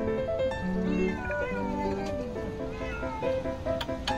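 Stray cats meowing a few times over background music of held, steady notes.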